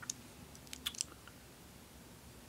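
Quiet room tone with a few faint, short clicks, mostly in the first second.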